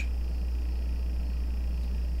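A steady low hum with a faint hiss behind it, unchanging: the recording's own background noise with no narration over it.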